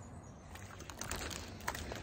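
Faint, scattered clicks and rustles of a hiker walking on a trail with a backpack: footsteps and gear or camera handling, starting about half a second in.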